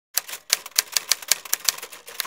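Typewriter keystroke sound effect: a quick run of sharp key clacks, about five or six a second, as the title text types out.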